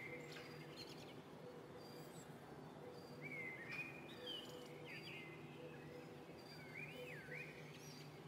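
Small birds chirping and whistling, with quick rising and falling calls about halfway through and again near the end, over a faint steady low hum of background noise outdoors.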